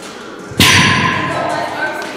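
A pair of heavy chrome dumbbells set down on a steel dumbbell rack: one loud metal-on-metal clank about half a second in, ringing on as it fades.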